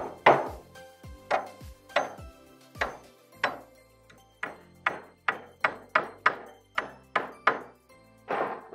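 Hammer driving nails into 2-by-1 timber: a run of sharp strikes, each with a short ring, spaced unevenly at first and then quickening to about three blows a second in the second half.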